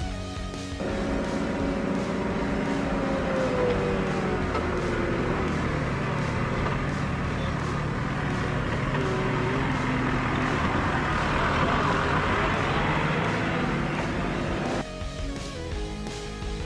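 Telehandler's diesel engine running close by as the machine drives over, its pitch rising and falling with the throttle and loudest near the end; the sound drops away suddenly shortly before the end. Background music runs underneath.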